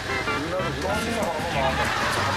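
Voices talking over a steady low hum of a navy ship's machinery.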